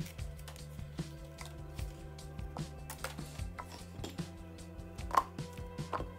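Soft knocks and taps as a banana is broken into pieces and dropped into an empty plastic NutriBullet blender cup, the loudest about five seconds in. Quiet background music with held notes plays underneath.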